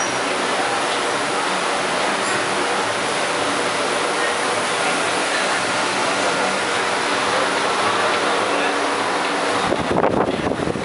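Steady background rush of a busy indoor market arcade, an even wash of noise with indistinct voices in it.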